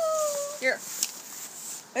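A child's long, high-pitched whine, held at one pitch and ending about half a second in, followed by a brief yelp; then quiet with a single click.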